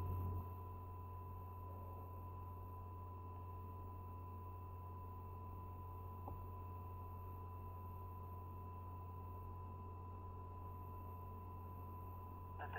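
Idle space-to-ground radio channel between transmissions: a steady low hum with faint hiss and a thin steady tone, the hum dropping a little just after the start, with one faint click near the middle.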